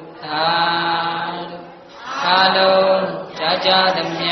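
A man's voice chanting Buddhist recitation in long, held notes on a steady pitch, phrase after phrase with short breaths between.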